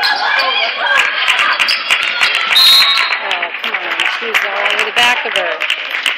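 Overlapping voices of spectators and players calling out in a gym, with many short sharp claps and knocks scattered through. About two and a half seconds in, a brief shrill steady tone sounds for under a second.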